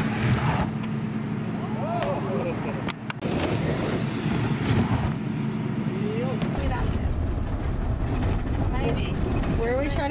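A steady hum with a few brief voices, then, about six and a half seconds in, the low rumble of a van being driven, heard from inside the cabin.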